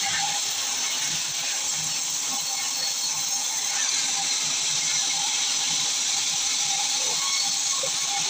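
Sawmill band saw running and cutting lengthwise through a large log: a steady, dense hiss with a faint steady whine underneath.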